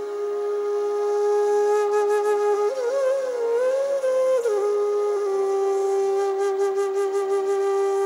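A bansuri (bamboo transverse flute) plays a slow melody. It holds a long note, rises about three seconds in to a higher, ornamented phrase that wavers in pitch, then settles back on the long held note.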